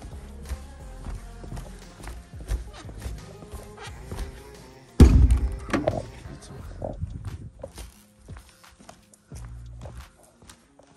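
Music playing, with one loud thud about halfway through as a portable speaker cabinet is set down on a wooden floor. The music drops away near the end, leaving a few light knocks.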